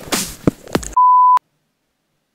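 A single loud, steady electronic beep of about a third of a second, starting about a second in and cutting off abruptly into dead silence, after a second of faint, scrappy sound.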